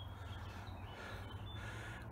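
Quiet outdoor background: a faint, steady low rumble, with two brief, faint high chirps, one at the start and one about a second and a half in.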